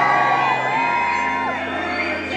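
Pop music playing loud over a concert hall's sound system, with the audience screaming and whooping over it in long rising and falling cries.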